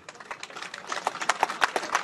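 Scattered applause from a small crowd, single hand claps at first, then thickening and getting louder about a second in.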